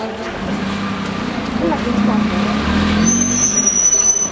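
A motor vehicle's engine running close by, growing louder, with a thin high squeal for about the last second.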